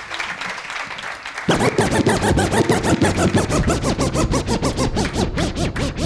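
Audience applause, then about a second and a half in, loud music with a fast beat starts playing over the studio sound system.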